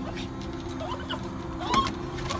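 Husky making brief, soft whining squeaks, the loudest near the end, over a faint steady hum.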